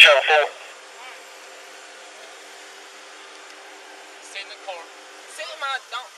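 A loud man's voice cuts off in the first half-second. A steady low hum and hiss follow, and faint voices come in from about four seconds in.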